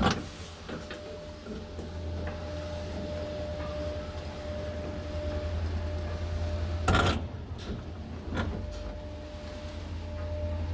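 Classic ASEA traction elevator travelling down: the hoist machine gives a steady low hum with a steady whine above it. A click sounds at the start, a loud clack about seven seconds in and a smaller one about a second later.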